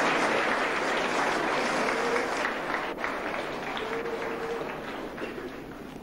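Audience applauding after a speech. The clapping is loudest at first and slowly dies down over several seconds.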